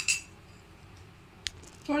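A metal spoon clinks against a bowl with a short ringing chink at the start, then a single sharp click about one and a half seconds in.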